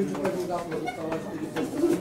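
Voices of footballers and spectators calling out across an outdoor pitch during a match, in short broken shouts, with a brighter call near the end.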